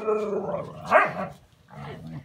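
A dog barking, mixed with a girl's laughter.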